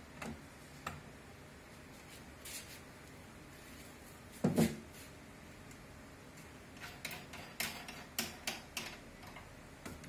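Light knocks and clicks of floor-lamp parts being handled and fitted together by hand during assembly, with one louder knock about halfway through and a quick run of clicks near the end.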